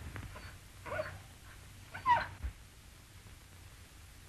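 A dog whimpering in two short, high cries, a weaker one about a second in and a louder one about two seconds in, over the hiss of an old film soundtrack.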